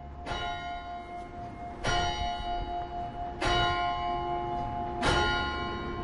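A bell struck four times, about a second and a half apart, each stroke ringing on and fading, over a low rumble. It is a bell sound within an electronic backing track.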